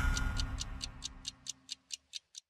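Clock-like ticking from a TV programme's title jingle, about four to five even ticks a second, over the fading tail of the theme music.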